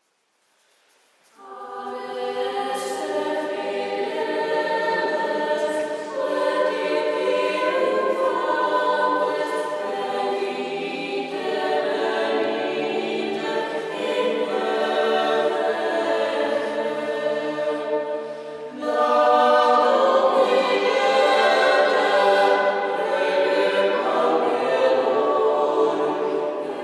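A choir singing, coming in about a second and a half after a brief silence, with a short break between phrases about two-thirds of the way through.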